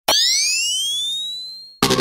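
Intro of an electronic grime track: a synthetic tone starts sharply and glides upward in pitch while fading away over almost two seconds. Just before the end, the full beat cuts in suddenly.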